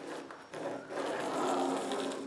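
A long acrylic quilting ruler sliding and scraping over paper as it is shifted into a new position, with a low held hum of a voice under it from about a second in.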